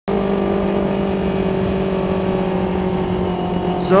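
Yamaha MT25's parallel-twin engine running at steady revs while the motorcycle rides along, a constant-pitched engine note over a low rush of wind. A voice starts just at the end.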